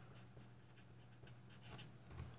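Faint scratching of a pen writing, over near-silent room tone with a low steady hum.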